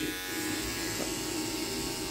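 Electric hair clipper running steadily with an even motor hum, held away from the beard between passes.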